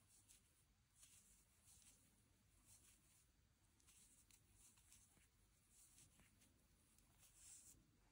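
Near silence, with faint, soft, scattered rustles of a crochet hook drawing cotton yarn through stitches.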